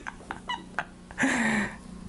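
A man laughing: a few short breathy bursts, then about a second in one louder voiced laugh that falls in pitch.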